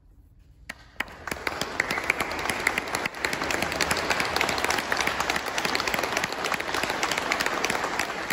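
Audience applauding after a quiet moment. The clapping begins about a second in and continues as a dense, steady patter.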